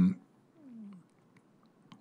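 A man's drawn-out hesitation sound into a meeting-room microphone cuts off at the very start. It is followed by a brief low voice-like hum that falls in pitch, then a faint, quiet room with a few small clicks.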